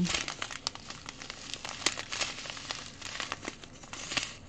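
Thin plastic bags of diamond painting drills crinkling as they are handled, with many small sharp crackles throughout.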